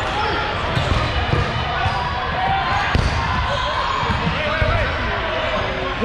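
Dodgeballs being thrown and thudding and bouncing on a hardwood gym floor, many scattered hits, under the shouts and chatter of players in a large gym hall.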